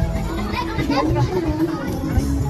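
Children playing and calling out, with other people's voices and music playing in the background.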